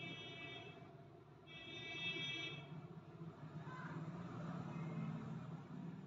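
Two faint, long, high-pitched beeps, the first ending about a second in and the second lasting just over a second, over a low steady background rumble.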